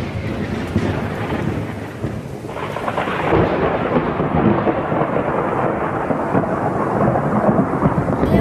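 Loud, steady rushing and rumbling noise of the kind a thunderstorm with rain makes; it turns duller about two and a half seconds in.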